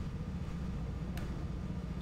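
A low, steady hum with one faint click about a second in.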